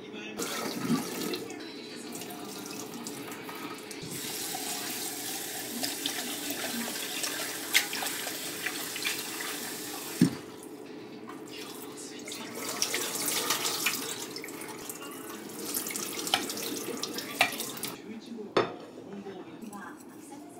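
Kitchen tap water running into a stainless steel pot of boiled udon as the noodles are rinsed and drained in the sink. The water runs in two long spells, broken by a few sharp clinks of the pot, the loudest about ten seconds in.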